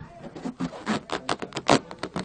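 Rubber balloon rubbed and squeezed by hand, giving a run of short, irregular squeaks: an old-time radio sound effect for a cow being turned inside out.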